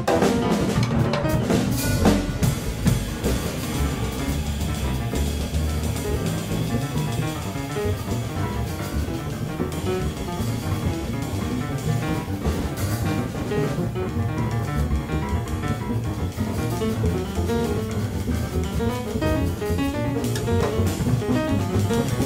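Jazz piano trio playing live: grand piano, upright double bass and drum kit with cymbals, playing together without a break.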